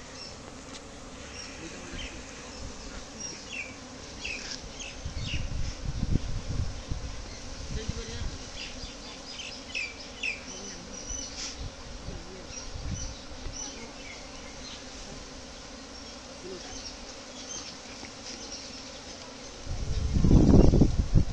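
A honeybee swarm buzzing steadily as it flies in around the entrance of a wooden box hive and moves in.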